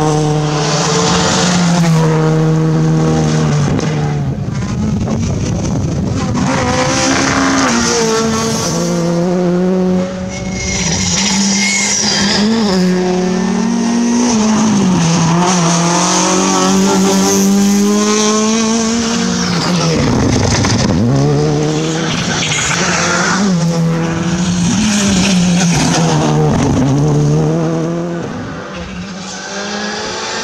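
Rally cars, a Skoda Fabia R5 and a Renault Clio Maxi, running flat out on a test stage one after another. Their engines rev high with quick gear changes, rising and falling in pitch, and one car passes by close around the middle of the stretch.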